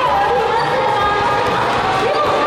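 Several voices calling out and shouting in a gymnasium, with footsteps and sneakers on the wooden floor.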